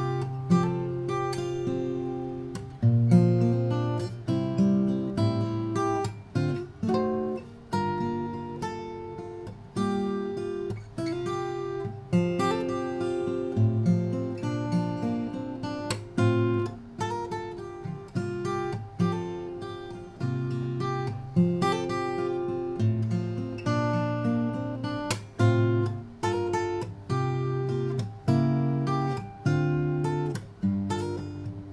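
Maestro Victoria ME cutaway acoustic guitar, Macassar ebony body with an Adirondack spruce top, played solo: a steady run of plucked notes and chords over ringing bass notes, each attack dying away into the next.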